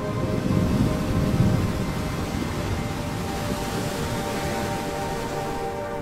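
An ocean wave breaking and washing: a low rumble peaks within the first couple of seconds, then spreads into a hiss of spray. Background music with sustained tones plays underneath.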